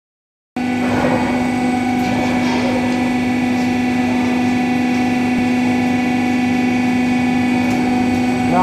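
Hydraulic wheel testing machine running, most likely its electric-motor hydraulic pump: a loud, steady hum built on one strong low tone, cutting in about half a second in and holding unchanged.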